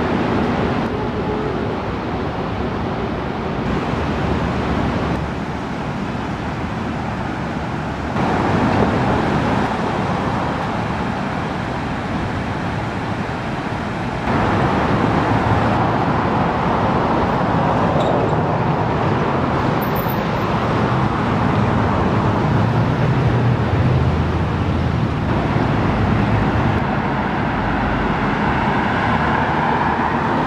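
Road traffic noise in city street ambience: a steady rush of passing cars with no clear tones. Its level and colour change abruptly several times.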